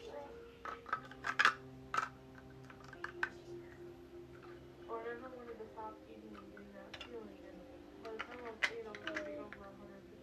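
Plastic Lego bricks clicking and clattering as pieces are handled and pressed together, a scattered run of sharp clicks that is busiest in the first two seconds and again about seven to nine seconds in.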